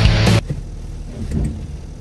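Rock music cuts off suddenly about half a second in. After it, a car engine idles with a low rumble, heard from inside the car.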